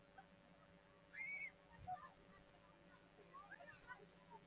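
Faint distant voices calling out across an open playing field, over a low steady hum. A short high-pitched call comes about a second in, followed by a soft thump and scattered faint calls.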